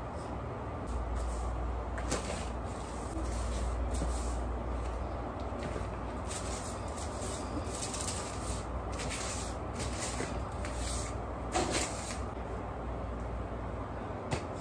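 Household cleaning sounds: irregular swishing and rustling strokes over a low rumble, with a knock about two seconds in and a louder bump near the end.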